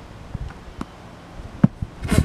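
A tennis ball struck with a tennis racket, then landing and bouncing on grass: a few short, soft knocks, the strongest about one and a half seconds in.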